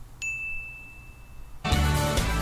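A single bell-like ding that starts suddenly and rings on as one steady tone for about a second and a half. Music then starts abruptly near the end.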